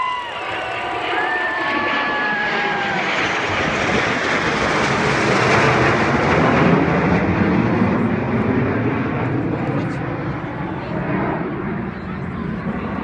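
Four Blue Angels F/A-18 Hornet jets flying over in tight formation: the jet roar builds to its loudest around the middle and then fades as they pass on.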